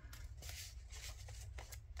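Faint paper rustling and light ticks as small paper tags and cards are handled and slid in a handmade junk journal's paper pocket, over a steady low hum.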